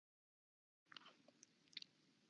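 Near silence: dead digital silence, then a voice-chat microphone opens about a second in, bringing faint hiss and a few soft clicks and mouth noises.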